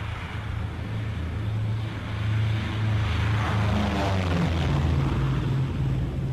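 Propeller aircraft engines droning steadily, growing louder about two seconds in, with a falling whine around the middle.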